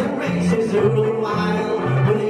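Banjolele strummed in a jaunty music-hall song, over an alternating two-note bass line, with a long-held melody note running through the middle of the bar.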